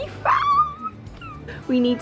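A short, high whimpering cry that rises quickly and then holds its pitch for about half a second, like a dog's whine. A woman's voice follows near the end.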